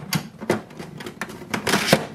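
Plastic clicks and a scraping slide as the rear paper input tray of an HP DeskJet 4133e printer is lifted and unfolded: two sharp clicks early, then a longer rasping scrape near the end.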